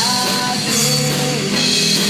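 A small pop-rock band playing live: several singers on microphones singing a held, gliding melody over electric guitar, electric bass and a drum kit.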